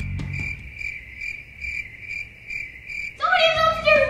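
Cricket chirping, a clean high chirp repeating about three times a second: the stock 'crickets' sound of an awkward silence where nobody answers. It stops about three seconds in.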